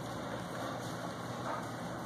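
Steady low hum and hiss of continuous background noise, with no clear events.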